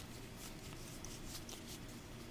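Faint rustling and a few soft clicks of a small handful of Pokémon trading cards being handled, over a low steady room hum.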